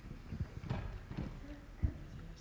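A few irregular low thuds and knocks, about four in two seconds, the loudest near the end.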